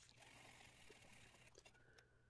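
Near silence: faint room tone with a very faint hiss for about the first second and a half.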